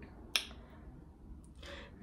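A single sharp click about a third of a second in, then quiet room tone with a brief soft hiss near the end.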